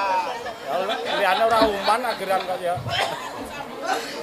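Indistinct chatter: several voices talking at once, none clearly picked out.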